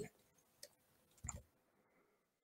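Near silence with two faint short clicks, a little under a second apart.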